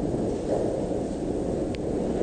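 Steady low hiss and rumble with no voice: the background noise of an old analogue sermon recording, room tone of the hall and tape hiss.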